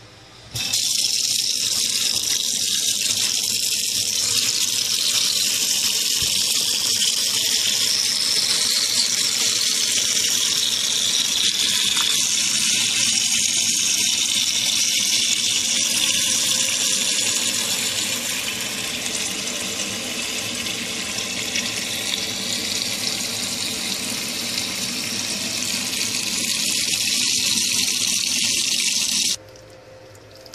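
Tap water running in a steady stream into a stainless steel pot of chicken skins, filling the pot. It starts about half a second in and is shut off suddenly near the end.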